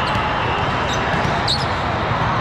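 Dense, echoing din of a big indoor volleyball hall with many courts in play: crowd chatter mixed with balls being hit and bounced, and a couple of brief high sneaker squeaks about a second in and halfway through.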